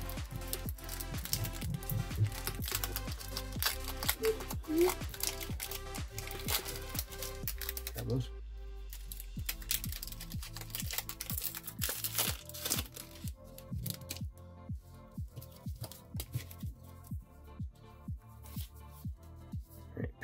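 Background music with a steady beat. Over roughly the first two thirds there is crinkling of a foil booster-pack wrapper being torn open and handled.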